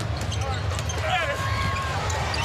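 Basketball being dribbled on a hardwood court over steady arena crowd noise, with a commentator's voice briefly over it about a second in.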